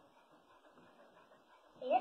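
A dog gives a short, high whine with a rising pitch near the end, running straight into a woman's voice.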